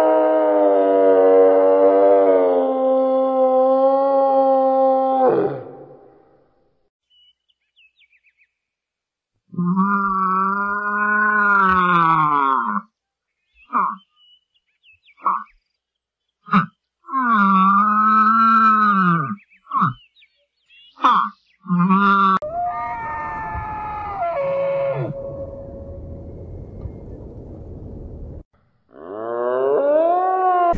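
Black-and-white ruffed lemurs calling: a run of loud, drawn-out wailing calls that bend up and down in pitch. The first lasts about five seconds, then after a silence come several more calls of a few seconds each and some short ones, then a quieter, rougher stretch, with another call starting near the end.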